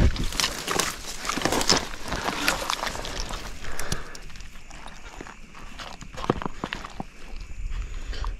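Handling noise as a landed Murray cod is laid and held on a plastic brag mat: irregular rustling with scattered sharp clicks and knocks, more of them in the first two seconds and again about six seconds in.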